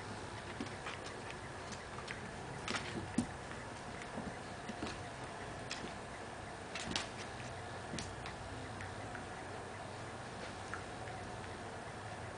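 A Scottish terrier puppy's claws clicking and scrabbling on a hardwood floor as it wrestles a stuffed toy: irregular light clicks, bunched most thickly around three seconds in and again around seven to eight seconds.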